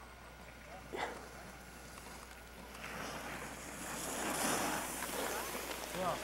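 Wind rushing over a camcorder microphone outdoors on a ski slope, low at first and building louder over the last few seconds, with faint distant voices.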